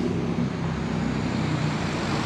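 Street traffic: a motor vehicle's engine running as it passes close by, over a steady wash of road noise.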